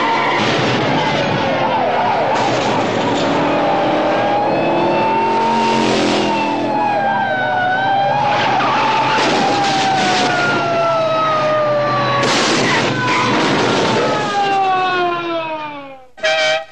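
Racing car engines revving and passing, their pitch sliding down as they go by, with bursts of tyre screeching a few times along the way.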